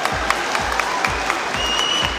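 Audience applauding over background music with a steady beat of about three beats a second.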